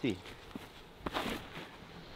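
Footsteps on dry fallen leaves as a disc golfer steps up and throws a drive, with one short, louder scuff of leaves about a second in.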